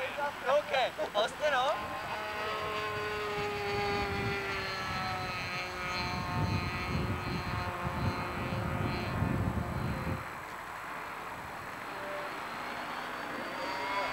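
Engine of a radio-controlled model aeroplane flying overhead: a steady high-pitched buzz that sags in pitch a few seconds in. A low rumble joins it for a few seconds around the middle.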